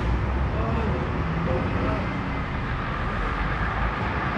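A steady low rumble with faint, indistinct voices.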